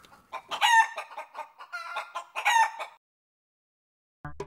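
Rooster crowing and clucking as a break-bumper sound effect. It cuts off about three seconds in, leaving dead silence.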